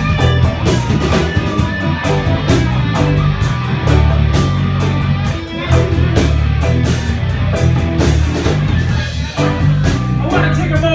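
Live rock band playing a guitar-led passage: electric guitar over bass and a drum kit, with steady cymbal hits keeping time.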